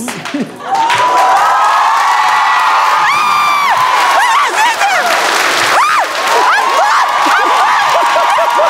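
Several voices cheering, whooping and shrieking together, loud and sustained, starting just under a second in, over a noisy background of claps or crowd noise.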